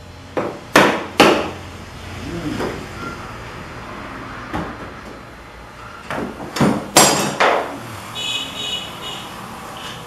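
Sharp knocks of wood and tools on a workbench as a pine planter box is handled and a bar clamp is picked up and set across it: three hard hits about a second in, then a quick group of knocks between about six and seven and a half seconds.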